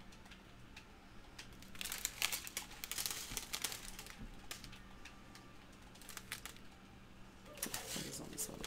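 Small plastic bags of diamond painting drills crinkling as they are handled, in a burst about two to four seconds in and again near the end, over a faint steady hum.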